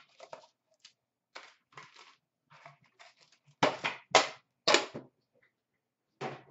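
Handling sounds from a metal trading-card tin being opened and its foil packs taken out: light clicks and rustles, then three louder knocks about half a second apart in the second half.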